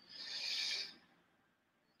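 A brief, faint rasping rub lasting under a second as the titanium corkscrew is swung out of a folding knife's handle, with no click.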